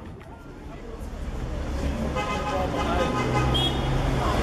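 City street traffic: vehicle engines and tyres, growing louder as cars pass close by.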